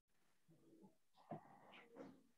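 Near silence: room tone, with a faint brief sound a little past halfway.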